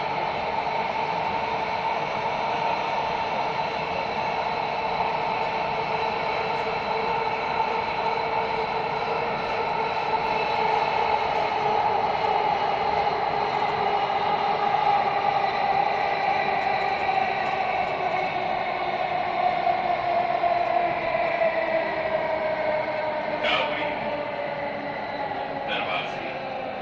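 Delhi Metro train running, heard from inside the coach: steady whine from the traction motors over the rumble of wheels on rail. In the second half the main whine slowly falls in pitch as the train slows, and a couple of short clicks come near the end.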